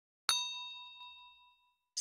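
A notification-bell sound effect: one bright bell ding struck a quarter second in, ringing out with several high tones and fading over about a second.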